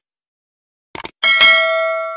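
Subscribe-button animation sound effect: short mouse-click sounds, then about a second in a bell ding that rings on with several steady tones and slowly fades.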